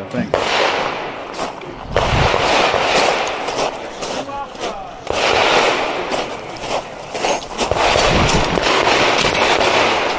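Scattered pistol shots from other stages, sharp cracks over a steady rough noise of crunching on gravel and wind on the microphone.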